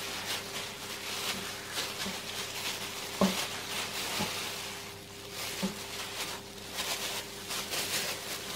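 Disposable plastic gloves rustling and crinkling as hands knead and squeeze a lump of oily snowy-skin mooncake dough on a glass board, with a few soft knocks of hands on the board, the loudest about three seconds in. A faint steady hum runs underneath.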